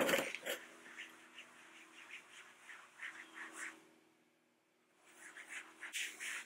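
A microfiber towel rubbing trim restorer into textured black plastic bumper trim in quick strokes, several a second. The strokes pause briefly and resume near the end, over a faint steady hum.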